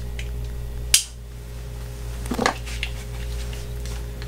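Metal parts of a pistol being handled during reassembly: the FN 509's dual recoil spring assembly is fitted into the slide, with one sharp click about a second in and a softer rattle and click about two and a half seconds in.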